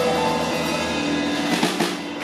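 Live band with a drum kit, upright bass and electric guitar playing, with held notes and a quick run of drum and cymbal hits near the end.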